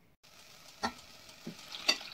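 Chopped nettles, onion and garlic sizzling in oil in a stainless steel pot while a wooden spoon stirs them, with three light knocks against the pot, the last the loudest.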